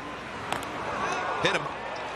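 Ballpark crowd murmur with a single sharp smack about half a second in: the pitched baseball striking the batter.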